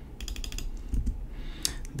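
Computer keyboard keystrokes: a quick run of key taps near the start and a couple more near the end.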